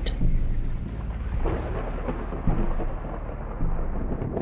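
Low rumble of thunder with a faint rain-like hiss, swelling a few times.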